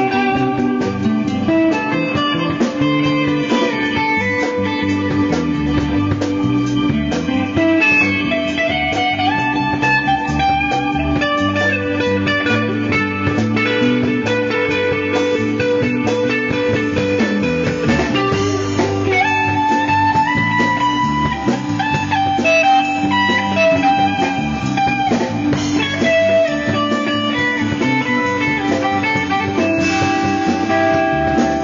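A jam band playing an instrumental passage live, an electric guitar leading with sliding melodic lines over a steady held note and the band's backing.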